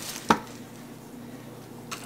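A single sharp tap or knock about a third of a second in, over quiet room tone.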